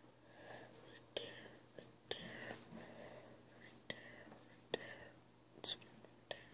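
Graphite pencil scratching on paper in short drawing strokes, close to the microphone, with about six sharp knocks spread through.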